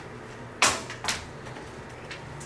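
Two sharp knocks on a hotel room door, about half a second apart, the first louder.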